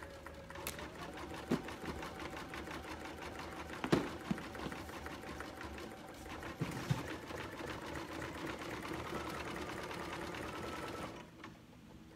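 Computerized sewing-and-embroidery combo machine stitching out an embroidery design: a fast, even run of needle strokes over a motor hum whose pitch shifts a couple of times. A few louder clicks and knocks come in between, and the machine stops about a second before the end.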